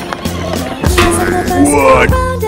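Background music with a steady bass line over the rumble of a ride-on toy car's plastic wheels rolling on stone paving. About a second in the rolling gets louder, and near the end a gliding tone falls in pitch as a wheel comes off.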